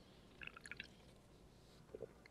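A man swallowing a drink from a can: a few faint wet clicks and gulps about half a second in, otherwise near silence.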